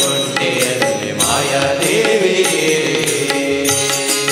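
Male vocalist singing a devotional bhajan: a wavering, gliding melodic line without clear words, over instrumental accompaniment with regular percussion strikes.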